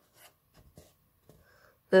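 A few faint, brief rustles of a sheet of patterned craft paper being handled and shifted in the hand.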